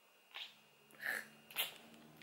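A person stifling laughter: three short, faint, breathy snickers through the nose.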